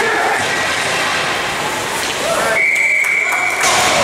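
Ice hockey game sound in a large indoor rink: a steady noisy din with voices calling out. Past the middle comes a single high, steady tone lasting about a second.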